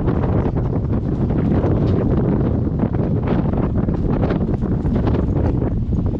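Wind buffeting the microphone: a loud, steady low rumble that flutters with the gusts.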